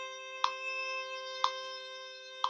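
Violin holding a long bowed whole-note C (low second finger on the A string) against a steady G drone tone. A metronome clicks twice, a second apart, at 60 beats per minute.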